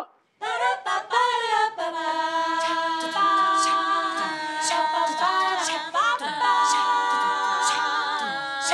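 Female a cappella group singing a film-soundtrack theme in several-part close harmony, starting about half a second in, the voices holding chords with short sharp accents cutting in throughout.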